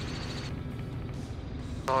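Robinson R44 helicopter in cruise flight, heard from inside the cabin: a steady low drone of the engine and rotor, with a fast even throb.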